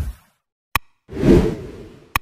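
Animation sound effects: a whoosh fading out at the start, a single sharp mouse click a little under a second in, then another whoosh that swells and dies away.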